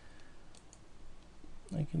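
A couple of faint computer mouse clicks, then a man's voice starts speaking near the end.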